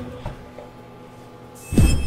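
A whooshing video-transition sound effect near the end, sweeping down in pitch with a bright chime ringing over it. Before it, a single light knock a quarter second in.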